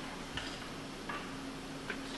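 Quiet hall with a low steady hum and three faint ticks, under a second apart.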